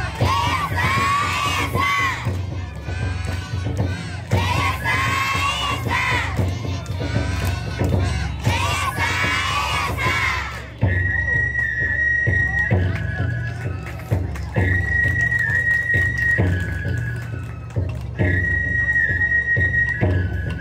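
Japanese lion-dance festival music (shishimai bayashi) with steady drum beats. Through the first half, a group of children's voices shout rhythmic calls in unison. From about halfway, a high flute plays long held notes, each falling a step in pitch before the next phrase.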